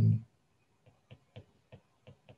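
Stylus tapping on a tablet screen while handwriting: a run of short, light clicks, several a second, starting about a second in.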